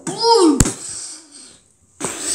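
A child's brief wordless voice sound, falling in pitch, cut by a sharp click just over half a second in, followed by faint handling noise that dies away.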